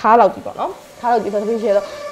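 A woman speaking, with a steady hiss coming in about halfway through and running under her voice.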